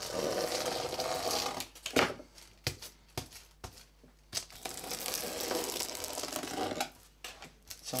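Aluminium adhesive tape being cut with a blade along the edge of an MDF board, the trimmed foil tearing and crinkling as it comes away. There are two long scratchy stretches, one at the start and one from about halfway, with a sharp click about two seconds in.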